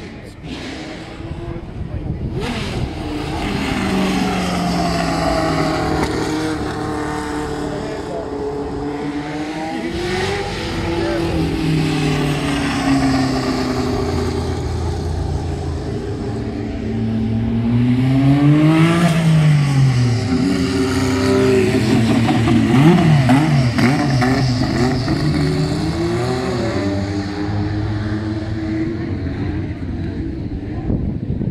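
Racing car engines running hard past the trackside, rising and falling in pitch again and again as the cars accelerate and go by. The loudest stretch is in the second half.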